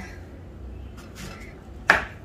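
A kitchen knife chops down through a green plantain onto a wooden cutting board: one sharp chop near the end, with a faint tap about a second in.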